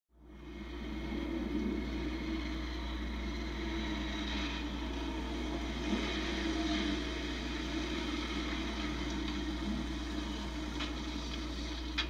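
Police motorcycles running as two riders cruise down a street: a steady low rumble over a constant low hum, fading in over the first second. It is heard as a TV show's soundtrack played back.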